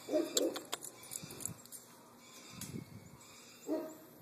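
A Tibetan yak grunting three times in short, low, hoot-like bursts, with a few sharp clicks in the first second.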